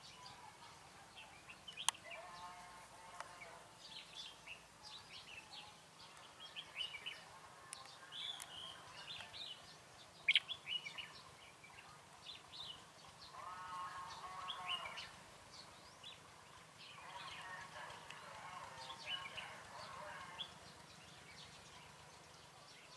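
Red-whiskered bulbuls calling and singing in short, sharp phrases: a caged decoy bulbul and wild birds answering it. Three longer, lower drawn-out calls come in as well, about two seconds in, near the middle and near the end.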